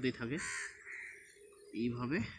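A crow cawing once, a harsh call of just under a second starting about half a second in.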